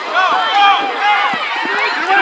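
Many voices of football spectators and sideline players yelling over one another during a play, a loud jumble of shouts with no clear words.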